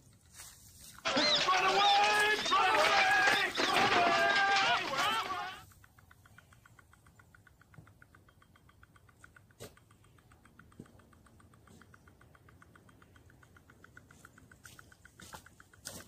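A voice-like sound with sliding pitch for about five seconds, starting about a second in, followed by faint, rapid, evenly spaced ticking.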